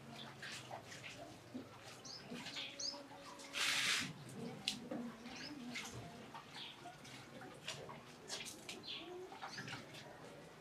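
Small birds chirping now and then in short, quick calls, over faint knocks and shuffles of household activity. A little under halfway through comes a brief rush of hissing noise, the loudest sound in the stretch.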